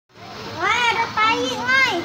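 A young child's high-pitched voice: three short sliding calls or babbles in quick succession, with no clear words.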